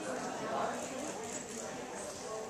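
A ridden Welsh pony's hoofbeats on the dirt footing of an indoor riding arena, with people's voices talking in the background.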